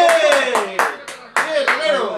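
A man clapping his hands, about six or seven sharp claps at uneven spacing, with a short gap just after the middle.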